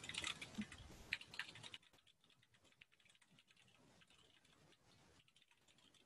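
Faint typing on a computer keyboard: quick key clicks that stop about two seconds in.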